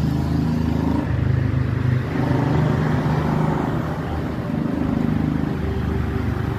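A motor vehicle engine running steadily close by, a low hum under a wash of street noise.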